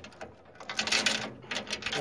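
Metal hitch parts (the latch and its safety chains) being handled, clinking and rattling in two short spells of rapid clicks, the first about half a second in and the second near the end.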